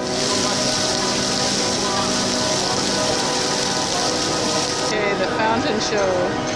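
Ground-level plaza fountain jets spraying and splashing onto the paving in a steady hiss, which cuts off abruptly about five seconds in as the jets shut off.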